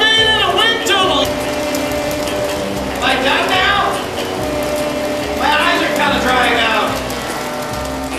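Three short bursts of garbled, wordless voice sounds, near the start, about three seconds in and about five and a half seconds in, over background music with steady held chords and a repeating low pulse.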